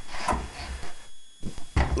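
Handling noise: a few light knocks and low rumbles, with no steady sound between them.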